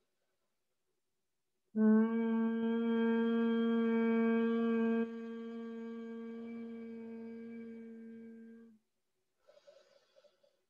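Humming breath: one steady hummed note held on a long exhale, starting about two seconds in and lasting about seven seconds. It drops in level about halfway, then fades before stopping.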